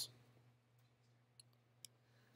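Near silence with a low steady hum, broken by two faint, sharp clicks about a second and a half and nearly two seconds in, from clicking through slides on a laptop.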